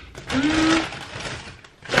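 Rustling handling noise of shopping being rummaged through, strongest in the first second and fading out, with a short hummed "mm" about half a second in.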